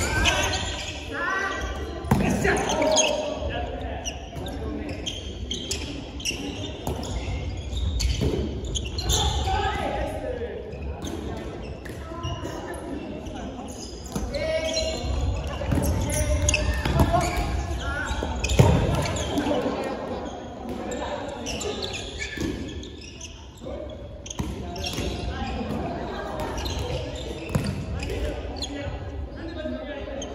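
Dodgeball practice in a gym: a ball repeatedly thudding on the wooden floor and being caught, with players calling out, all echoing around the hall.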